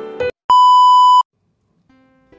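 Intro music ends abruptly, followed by a single loud, steady electronic beep of about 1 kHz that lasts under a second and stops sharply. After a short silence, soft plucked-string background music starts near the end.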